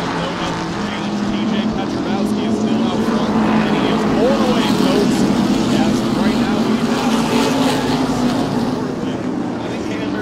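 A pack of SST modified race cars running at speed around the oval, their engines a steady massed drone. It swells loudest about halfway through as cars pass along the near straight, then eases slightly.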